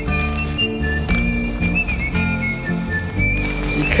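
Western-style background music: a high whistled melody moving in held notes over sustained low tones.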